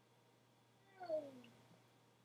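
A single short meow-like call, about a second in, that slides down in pitch over half a second, heard over a video call.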